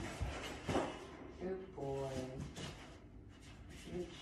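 A woman's short wordless hum or murmur, with faint quick scuffling noises around it.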